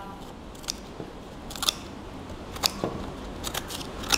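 WORKPRO W015023 8-inch stainless-steel multi-purpose scissors cutting through corrugated cardboard: about five short, crisp snips, roughly a second apart.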